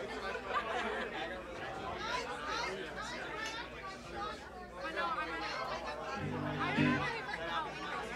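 Audience chatter in a bar room between songs: many voices talking at once, with a short low note from an instrument about six seconds in.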